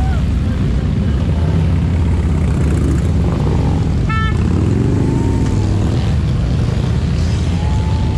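A slow procession of large touring motorcycles rumbling past in a steady stream, their engines making a continuous deep, loud drone. A short high beep sounds about four seconds in.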